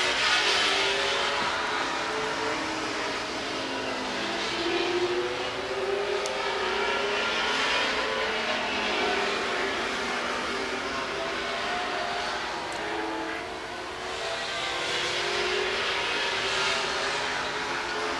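Several late model stock car engines running at race speed around an asphalt oval, their wavering engine notes swelling and fading as the cars pass and move away.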